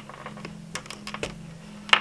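A few light clicks and taps of hands handling a small microphone cable and its plug-in adapter as the adapter is disconnected, over a low steady background hum.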